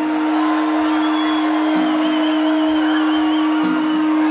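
Live rock band holding one steady sustained note, with concert crowd noise underneath. A high wavering tone runs through the middle.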